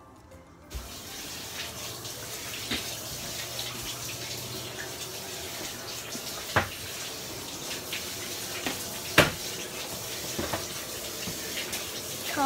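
Water running from a tap into a sink, a steady rush that starts about a second in, with a few sharp knocks over it, the loudest about nine seconds in.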